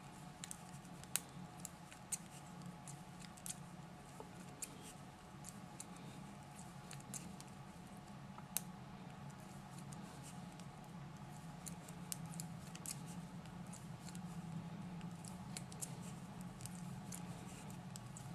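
Metal knitting needles clicking and ticking irregularly as stitches are knitted, over a faint steady low hum.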